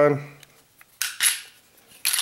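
Smith & Wesson M&P Shield pistol's slide released from slide lock and running forward on the frame: a single sharp metal-on-metal clack about a second in that rings briefly, with a few faint clicks after it.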